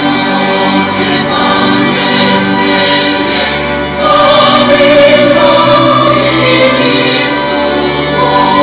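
Church choir singing a sacred hymn during Mass, with organ accompaniment; the music swells louder about halfway through.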